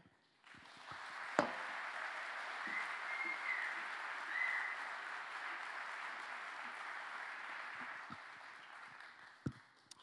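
Audience applauding, starting about half a second in and tapering off near the end, with one sharp knock about a second and a half in.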